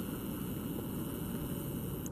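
Wind buffeting the microphone: a steady, uneven low rumble with no distinct steps or knocks.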